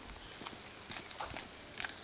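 Footsteps on a cobblestone lane: a run of short, irregular clicks and scuffs of shoes on stone.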